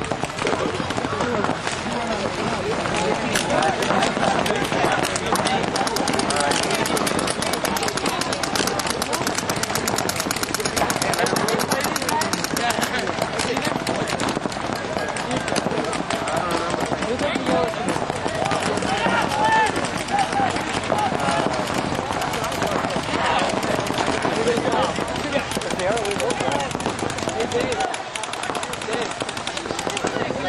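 Paintball markers firing in rapid, continuous strings of shots, many overlapping, with voices shouting over them.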